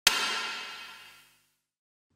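A single electronic drum hit from Superior Drummer 3's built-in electronic sounds, played with no words over it. It has a sharp attack and a bright, ringing tail that fades out over about a second and a half.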